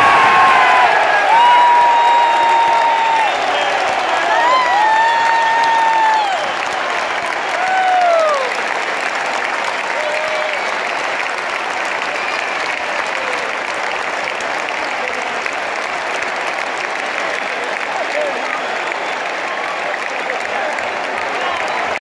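Football stadium crowd cheering a goal: loud yells from fans, with several long held shouts standing out over the din in the first eight seconds or so, then settling into steady clapping and crowd noise.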